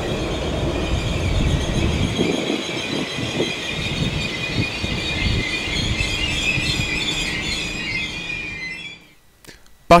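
X61 electric commuter train braking as it comes into a station: a high-pitched squeal of several steady tones over a low rumble that fades about two seconds in. The squeal cuts off abruptly about nine seconds in.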